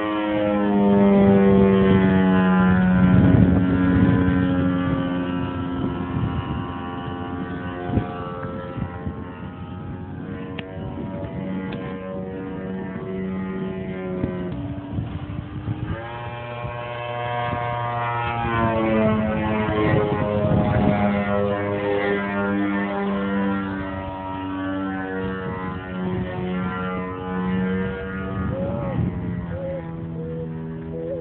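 Engine of a 2.5 m radio-controlled Extra 330S aerobatic model in flight, its pitch sliding up and down as it manoeuvres. About 14 seconds in it drops to a lower, quieter note, then climbs again a couple of seconds later.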